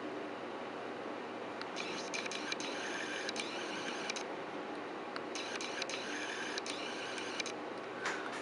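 Camera lens autofocus motor whirring with fine clicks in two bursts of about two seconds each, over a steady faint hiss. The lens is hunting for focus on a computer screen.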